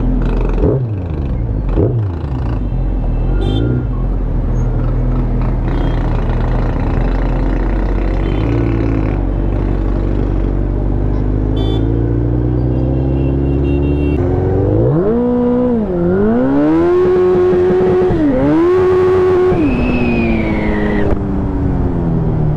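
Suzuki Hayabusa's inline-four engine running at low revs in traffic, then accelerating hard from about two-thirds of the way in, with two quick dips in revs at the gear changes. Near the end a high whistle falls in pitch: air passing through the rider's helmet at speed.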